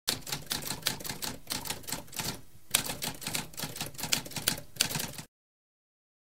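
Manual typewriter typing: a fast run of key strikes, with a short pause about two and a half seconds in and a harder strike just after it. The typing stops abruptly a little past five seconds.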